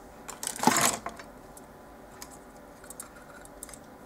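Small metal binder clips clinking as they are handled and fitted onto a cardstock corner, with one louder metallic clatter about half a second in, then a few faint clicks.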